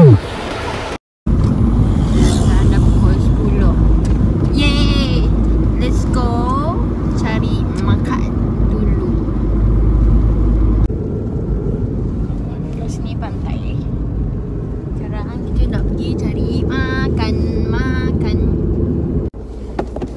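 Car running, heard inside the cabin: a steady low rumble of engine and road noise, with voices talking now and then. It starts after a brief silence about a second in and gets quieter about halfway through.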